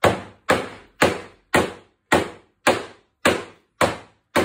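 Mallet blows on an oak chair's back spindle, driving it out of its socket in the seat: eight sharp knocks in an even rhythm of about two a second. The spindle is stuck in its old glue joint and is being knocked loose for re-gluing.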